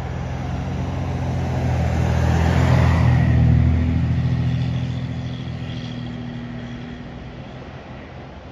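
A motor vehicle passing on the road. Its sound swells to a peak about three seconds in and then fades away.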